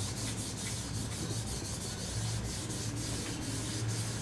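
Rosin being rubbed along the hair of a violin bow in quick back-and-forth strokes, a steady scratchy rubbing.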